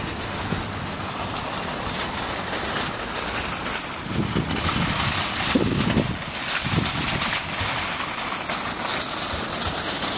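Honda Magna motorcycle's V4 engine idling steadily, with a few duller low thumps about halfway through.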